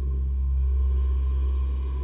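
A deep, steady low drone of film score or sound design, swelling slightly over the first second, with a fainter wavering tone above it.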